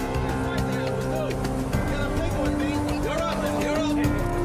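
Background music: long held notes over a steady beat.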